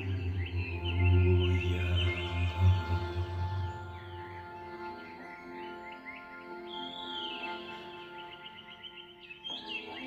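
Accordion holding long sustained chords, loud for the first few seconds and then softer, while birds chirp over it.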